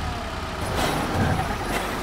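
Deep, steady engine rumble of a Volkswagen Amarok V6 pickup.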